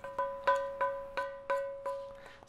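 Cast iron skillet knocked with a wooden spoon about three times a second to tap the cooked chicken out, each knock making the pan ring at the same bell-like pitch.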